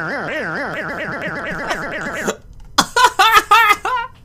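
A voice-like warbling tone whose pitch swings up and down a few times a second, the swings quickening before it cuts off about two seconds in: an edited, pitch-wobbled sound from the YouTube Poop. After a short pause, a man laughs in a quick run of short bursts.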